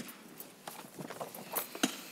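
Light, sharp knocks and clicks at irregular intervals, about half a dozen, the loudest near the end, over faint room hiss.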